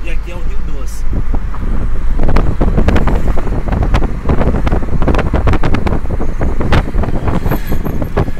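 A car's engine and road rumble heard from inside the cabin, with wind buffeting the microphone through the open side window in irregular gusts from about two seconds in.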